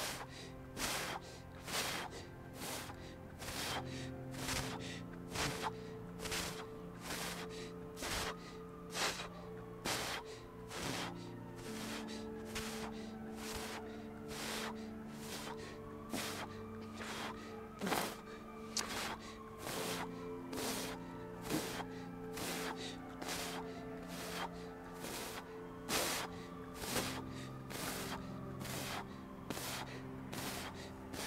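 Rapid, forceful Wim Hof power breathing through the mouth, a sharp regular breath somewhat more than once a second, over background music of slow sustained chords.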